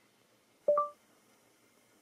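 Google Assistant's short electronic chime from the car's speakers, played when the steering-wheel voice button is held, signalling that Android Auto's voice assistant is now listening. It sounds once, a brief tone with a higher note just after the first, about two-thirds of a second in.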